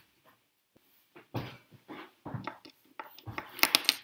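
Rummaging and handling sounds as a packet of bass bridge saddles is fetched and handled: irregular rustles and knocks, ending in a quick run of sharp clicks and rattles of the small metal parts.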